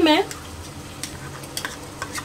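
Chopped tomatoes and fried onions sizzling in oil in an aluminium pot. A few light clicks of a metal spoon against the pot and bowl come through the sizzle.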